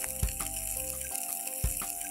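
Prawn and oyster cutlets sizzling in a little olive oil in a hot pan, a steady hiss, under background music of held notes with a few soft low beats.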